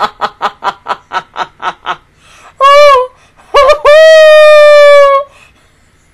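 A woman laughing hard in quick, even ha-ha pulses, about four a second. Then come two loud, high-pitched cries, the second one long and held, about four seconds in.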